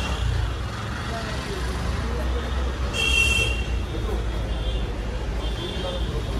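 Busy street traffic: a steady low rumble with a short high-pitched horn beep about three seconds in, and faint voices around.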